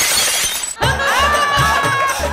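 A sudden loud crash lasting under a second, then background music with a pulsing bass beat and a long held note that slides up and stays steady.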